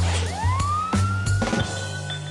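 A police siren sound effect winds up, rising in pitch from about a third of a second in and then holding one steady high tone. It plays over background music with a steady beat.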